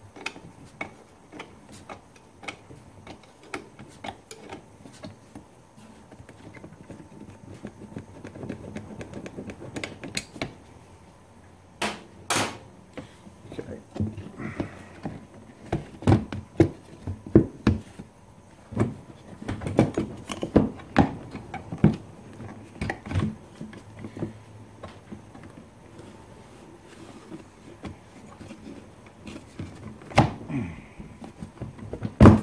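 Hand tools on metal as the bolts of a quad's gear lever mounting bracket are undone: a run of light clicks from the wrench, then a cluster of louder metal knocks and clunks about halfway through as the bracket is worked loose.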